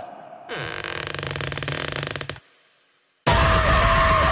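Trailer sound design: a dense, fast rattling build for about two seconds cuts off suddenly into a moment of silence. It is followed by a loud music hit with a held tone.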